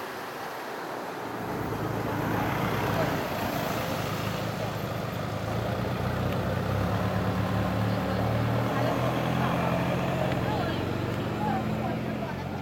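A motor vehicle engine running close by, a steady low hum that comes in about a second and a half in and holds, with people chatting in the background.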